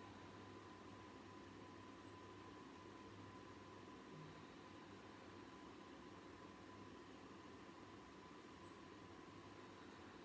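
Near silence: room tone with a faint steady hum and hiss.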